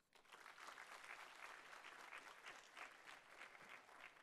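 Faint audience applause: many hands clapping, starting just after the speech ends and thinning out near the end.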